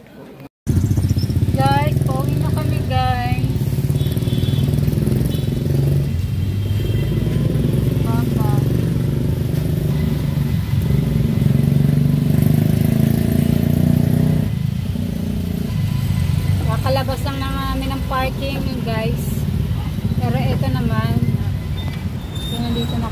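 A vehicle engine runs steadily in city traffic, heard from inside the vehicle, with voices now and then. The sound cuts in abruptly about half a second in.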